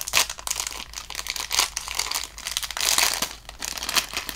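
Thin clear plastic bag crinkling and crackling as fingers work it open, in a busy run of small irregular crackles.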